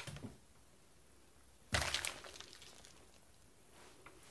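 A sudden thump a little under two seconds in, followed by the crinkling of a plastic mailer bag being handled and lifted, with a few lighter knocks near the start.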